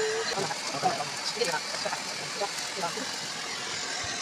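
People talking in the background, in short broken phrases, over a steady faint hum.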